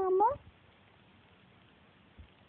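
A three-month-old baby cooing: one drawn-out vocal sound that dips and then rises in pitch, ending about half a second in. After that only faint room noise.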